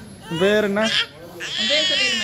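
A small child's voice: a short vocal burst in the first second, then a long, high-pitched, wavering squeal in the second half.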